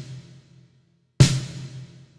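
Pitched-down LinnDrum snare sample through an Eventide SP2016 reverb on a vintage stereo room setting, crisp and bright. One hit lands a little over a second in, and its reverb tail dies away; at the start the tail of the previous hit is still fading.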